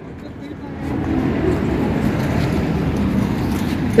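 Road traffic noise swelling about a second in and then holding steady.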